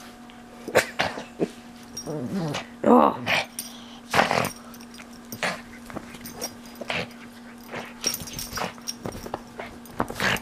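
Pug growling in short, irregular bursts while mauling and shaking a stuffed toy.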